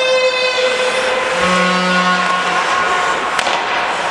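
Ice hockey rink noise, skating and play on the ice, with a few held musical tones over it: a higher note near the start, then a lower one for about a second.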